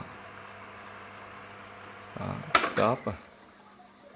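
Pioneer RT-1020H three-motor reel-to-reel tape deck spooling tape in fast wind, a steady, quiet, smooth whir. A sharp click comes about two and a half seconds in, and the whir then drops away.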